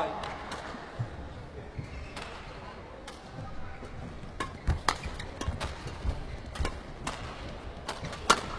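A badminton rally: rackets strike the shuttlecock in sharp cracks, spaced out at first and then coming in a quick exchange in the second half, with players' feet thudding on the court, over steady arena crowd murmur.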